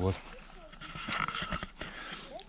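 A man's single short word, then quiet outdoor background noise with a few faint clicks near the end.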